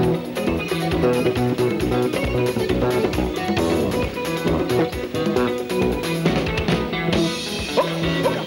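Live soukous band playing: electric guitars and an electric bass guitar over a drum kit, steady and continuous.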